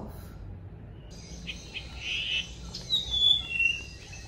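A person sipping and slurping a drink from a mug: airy sucking hiss with a falling, whistle-like squeak near the end.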